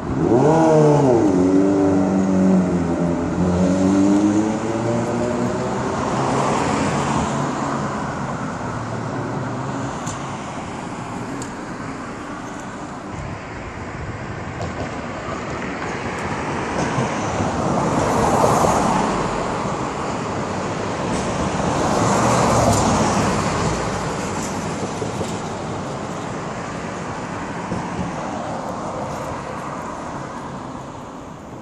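Road traffic: in the first few seconds a vehicle's engine accelerates, its pitch dipping and rising again, then cars pass by one after another, the loudest passes about 18 and 22 seconds in.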